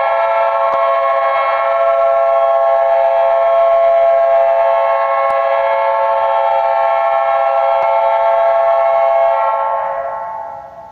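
Ice hockey arena goal horn blaring one long, steady multi-note chord, then fading out near the end.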